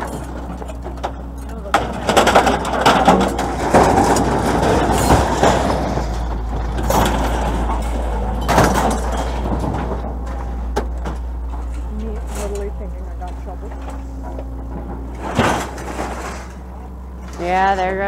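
Scrap metal and junk clattering and knocking as it is pulled off a loaded trailer, busiest a couple of seconds in, then a few single knocks, over a steady low hum.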